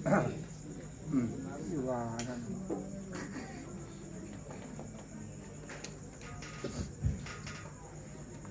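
A pause in amplified Qur'an recitation: a few brief voices from the gathering over a steady electrical hum and whine, with a short pitched vocal sound from about one to two seconds in.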